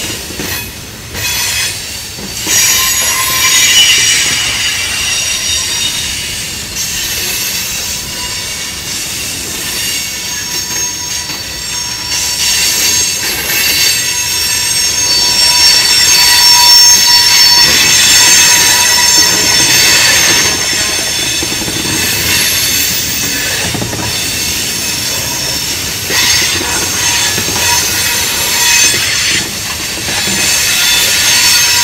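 Freight-car wheels squealing as a mixed freight train rolls slowly through a tight curve: the flanges grind against the rail in several high, wavering tones over the rumble of the wheels on the track. The squeal grows louder a few seconds in and is loudest near the middle.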